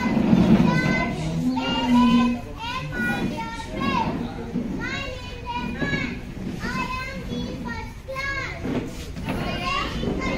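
A large group of schoolchildren talking and calling out over one another, many high young voices overlapping at once, loudest at the very start.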